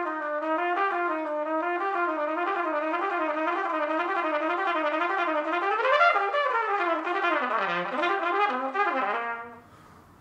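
Trumpet playing a fast run of a short repeating note figure. About six seconds in it climbs to a high note, then drops to a low note and comes back up, stopping shortly before the end.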